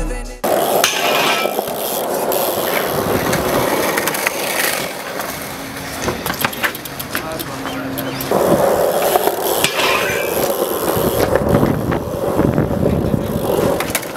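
The background music cuts off about half a second in. After it comes the raw sound of a concrete skatepark: skateboard wheels rolling on the concrete, with scattered clacks and knocks, and voices in the background. The rolling gets louder about eight seconds in.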